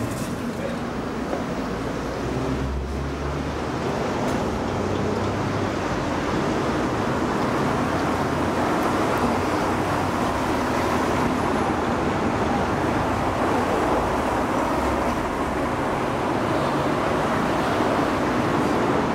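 Steady road traffic noise: a continuous wash of passing vehicles that grows a little louder about four seconds in.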